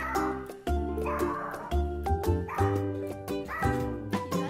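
Upbeat background music with a steady beat; under it a bichon frise barks a few times.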